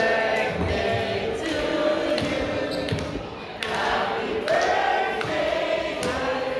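A group of people singing together, with a few sharp thumps among the voices.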